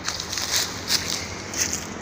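Footsteps on dry leaf litter: a few soft crunching, rustling steps.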